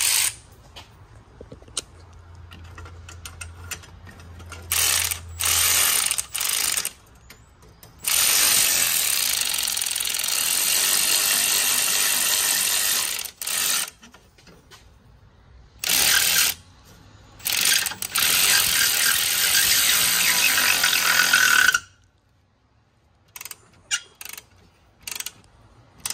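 Cordless electric ratchet running in bursts as it drives the nut of a welded exhaust clamp tight around the exhaust pipe: several short runs, and two long runs of about five and four seconds. The long runs stop abruptly, and a few faint clicks follow near the end.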